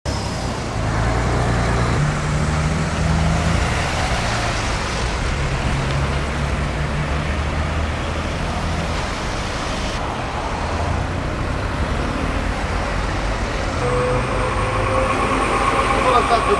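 Road traffic noise with a steady low hum of heavy diesel engines running, its pitch shifting a few times.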